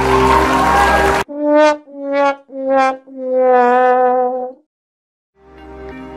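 Electronic background music with a rising noise sweep cuts off abruptly about a second in. Then comes the 'sad trombone' fail sound effect: three short brass notes stepping down in pitch and a long held last note. After a brief gap the music starts again near the end.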